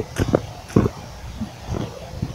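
A lit sparkler burning with a faint steady fizz, broken by a handful of short crackles and knocks.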